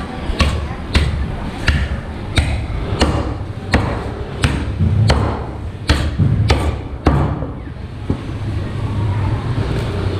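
A butcher's cleaver chopping through a carcass on a round wooden chopping block: about ten sharp chops, roughly one every two-thirds of a second, stopping about seven seconds in. A steady low rumble continues underneath.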